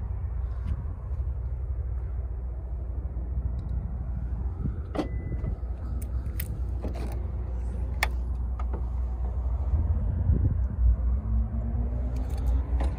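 A steady low rumble, with several sharp clicks between about five and nine seconds in, as the trunk lid of a Lexus IS250C hardtop convertible is unlatched and raised.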